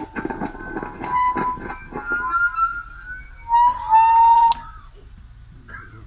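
A man chanting an Arabic funeral supplication (dua) in a drawn-out melodic voice, with long held and gliding notes. The loudest held note comes about four seconds in, after which the chant stops.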